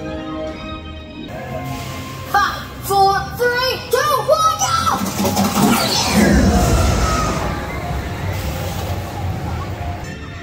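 Incredicoaster steel roller coaster train rushing past on its track: a loud rumble with a falling whoosh about halfway through, fading over the next few seconds, over park background music and voices.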